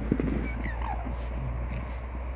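Silver fox giving a few short, high-pitched whining squeals during a play-fight, the last one falling in pitch, about half a second to a second in.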